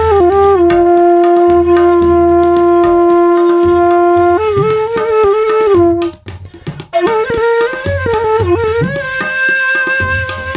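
Bamboo bansuri flute holding one long low note for about four seconds, then a run of ornamented notes that stops about six seconds in. After a brief break it starts a new phrase, with tabla strokes underneath.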